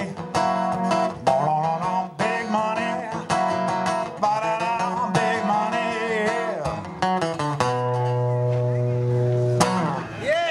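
Steel-string acoustic guitar strummed in the song's closing bars, with a voice singing over it. Near the end a final chord is left ringing for about two seconds, then damped.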